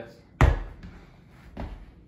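A basketball striking a hard surface once with a sharp thud, followed by a lighter knock about a second later.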